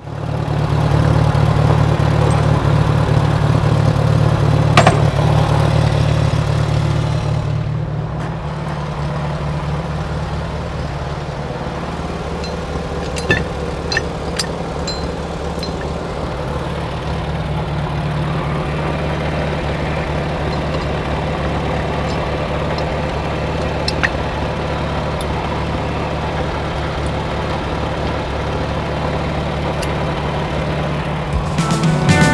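Farmall 140 tractor's four-cylinder gasoline engine idling steadily, a little louder for the first several seconds before settling lower, with a few short clicks.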